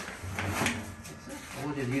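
A few short clacks and a scrape as a patient-positioning strap is pressed and adjusted against the upright long-length X-ray stand.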